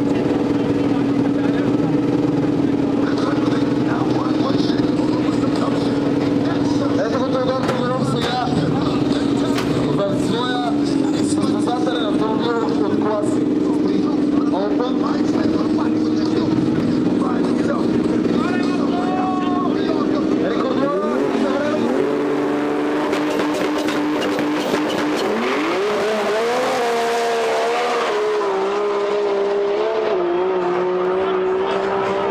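Nissan RB26DETT twin-turbo straight-six in a drag-race VW Scirocco. It holds a steady note at first, then rises in pitch about 25 seconds in and pulls hard as the car accelerates down the strip. Voices are heard over it in the middle.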